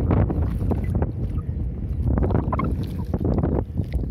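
Wind buffeting the phone's microphone, a steady low rumble.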